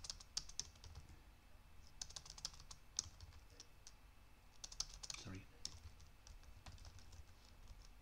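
Faint typing on a computer keyboard: short runs of key clicks with pauses between them.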